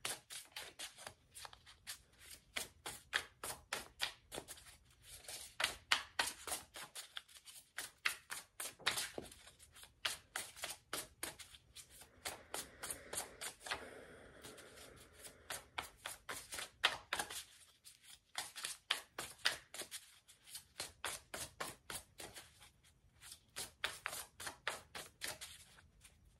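Deck of Sacred Creators Oracle cards being shuffled by hand: a quiet, steady run of soft card slaps and flicks, several a second, with a smoother sliding stretch about halfway through and short pauses at about seven and eighteen seconds in.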